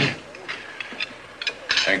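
A few faint, scattered clicks and knocks over quiet room noise, then a man's voice begins near the end.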